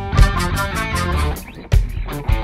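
Live funk band playing an instrumental passage: electric guitar, bass guitar and a drum kit with sharp regular drum hits.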